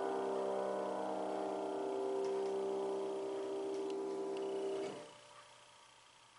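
A grand piano chord held and left ringing, then damped about five seconds in as the keys are let go. After it only a few faint ticks are heard.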